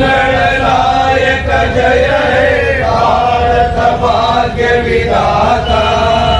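A group of men's voices chanting together in long, held tones, pausing briefly every second or so.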